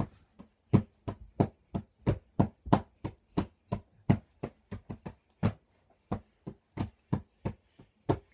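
Hickory drumsticks playing a simple steady beat on pillows, about three strikes a second, with a louder stroke every other beat.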